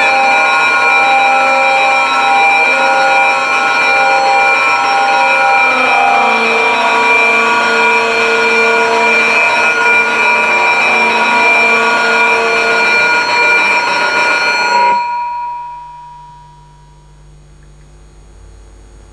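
A loud, sustained drone of many steady tones sounding together, an electronic sound cue. About six seconds in some of the tones move to new pitches. It cuts off about fifteen seconds in, leaving one tone that dies away over the next two seconds.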